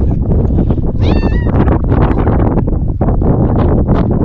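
Domestic cat meowing once, a short call that rises in pitch about a second in, over a loud, steady low rumble.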